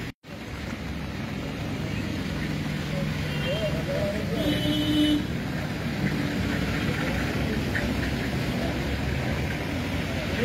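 Steady road traffic noise from passing vehicles, with a brief dropout right at the start and a few faint short tones around four to five seconds in.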